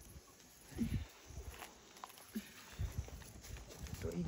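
Low, muffled thumps and rustling, handling noise from gloved hands rubbing and knocking near the recording phone, in two bursts about two seconds apart.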